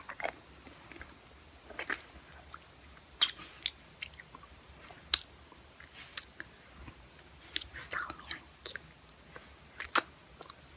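Close-miked wet mouth sounds of sucking a hard lollipop: sharp lip smacks and slurps, irregular and a second or so apart.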